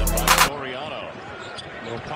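Music with a heavy bass beat cuts off about half a second in, giving way to quieter basketball broadcast sound: arena noise with a commentator's voice.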